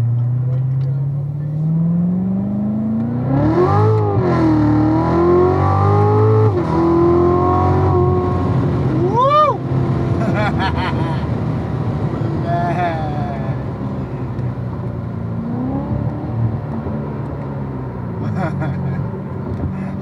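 Corvette Z06's V8 heard from inside the cabin, revving up hard through the gears with a sudden gear change about six and a half seconds in, then running lower and steadier as the car eases off. High excited shouts from the occupants cut over the engine twice, about nine and a half and twelve and a half seconds in.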